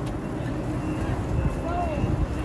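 Low rumbling noise of a C-Train light-rail car standing at the platform with its doors open as people step aboard. A faint steady high tone begins about halfway through, and a brief voice comes near the end.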